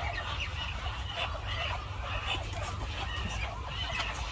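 A flock of poultry calling, many short overlapping calls throughout, over a steady low rumble.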